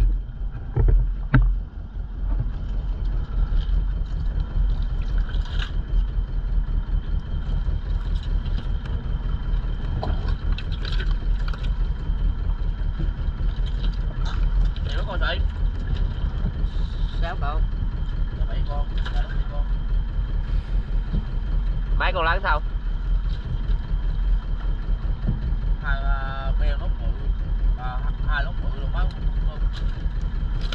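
A fishing boat's engine running steadily: a low drone with a fast, even pulse that holds throughout.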